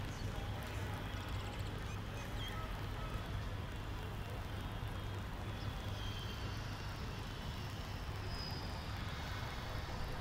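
Steady outdoor ambience from the ground microphones of a near-empty cricket stadium: a low hum under an even haze, with a few faint, short high chirps.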